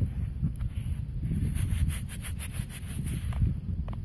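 Gloved fingers rubbing and scraping in loose, damp soil and over a small round find just dug from it, a run of short scratchy strokes, with a steady low rumble of wind on the microphone.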